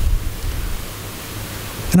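Steady hiss of background noise with a low rumble, strongest in the first second, then a man's voice starts speaking right at the end.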